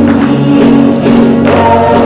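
A live folk ensemble playing and singing together: a group of voices in chorus over guitars, violins, keyboard and accordion, with held notes and light percussive strikes.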